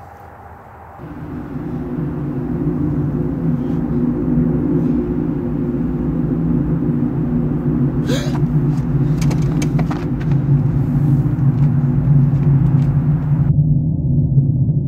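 A low, steady droning rumble made of several held low tones fades in about a second in and slowly grows louder. It carries on unchanged across the cut to the title card near the end, so it belongs to the edited soundtrack, not to the filmed scene.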